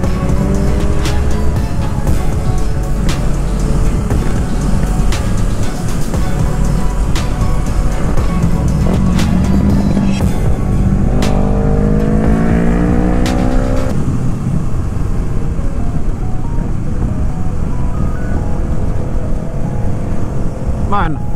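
Motorcycle engine running under way, heard from on the bike with heavy wind rush. Its pitch climbs as it accelerates near the start and again for a few seconds just past the middle.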